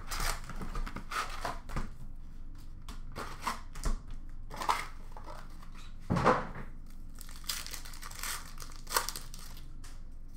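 Upper Deck hockey card retail box and its foil card packs being handled and torn open, an irregular crinkling and rustling of wrappers and cardboard. The loudest crinkle comes about six seconds in.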